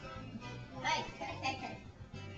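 Music playing in the background with a steady low beat, and a short burst of a person's voice about a second in.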